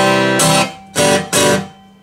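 High-end vintage steel-string acoustic guitar strummed hard: a ringing chord at the start, then two quick strums about a second in that ring out and fade. Played hard, its bass comes out strongly rather than the tone going thin and bright.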